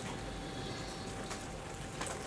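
A pause in speech: steady low room hiss with a faint steady hum, and no distinct event.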